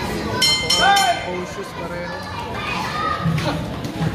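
Boxing ring bell struck several times in quick succession about half a second in, signalling the end of the round, over a crowd shouting and cheering in a large hall.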